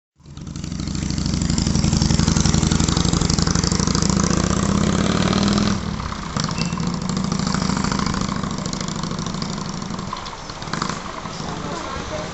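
Harley-Davidson trike's V-twin engine running as the trike pulls away. The engine is loud at first, drops sharply in level about halfway through, and then fades slowly as the trike moves off.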